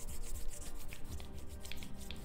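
Fingers rubbing and massaging through hair against the scalp, close to the microphone: a quick run of short rubbing strokes, with background music underneath.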